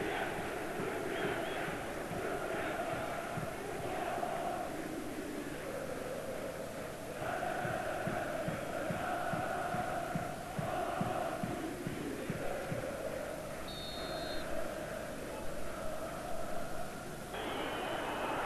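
Football stadium crowd chanting in unison, the chant shifting in pitch every second or two.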